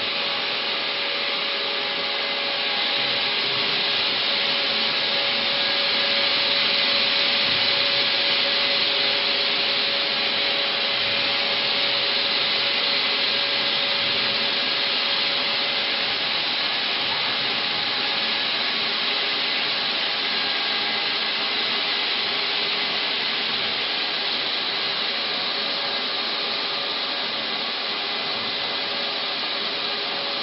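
Crystal inner-engraving laser machine running: a steady whirring noise with several constant humming tones, holding even throughout and swelling slightly a few seconds in.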